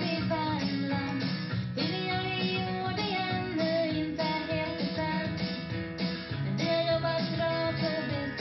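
A song with guitar and singing playing through a Bose SoundLink Wireless speaker, streamed over Bluetooth from a laptop.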